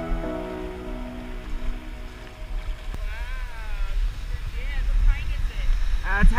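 Background music fades out over the first two seconds, leaving the low rumble of surf and wind on the microphone. Faint distant voices call out twice in the second half.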